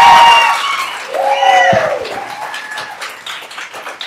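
Audience applauding, with loud shouted cheers about a second in. The clapping fades away toward the end.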